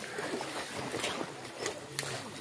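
A cast net and freshly caught fish being handled on a wet, muddy riverbank: scattered short slaps and rustles over a steady wash of river water.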